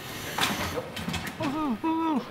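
A person's voice making short sounds that fall in pitch, with no recognisable words, after a brief hiss about half a second in.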